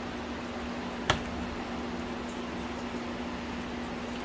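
A steady low machine hum with a constant tone, and one sharp click about a second in.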